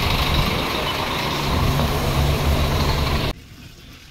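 Heavy truck and bus engines idling in a steady low drone, which cuts off suddenly about three seconds in.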